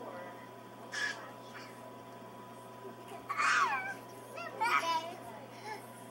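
Toddlers' high-pitched squeals and wordless vocalizing: a short yelp about a second in, then longer squeals with sliding pitch a little after three seconds and again around five seconds, over a steady low hum.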